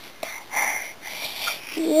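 Soft breathy sounds from a small child, with a voiced word starting right at the end.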